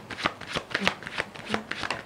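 Tarot deck being shuffled by hand: a quick run of papery card clicks, several a second.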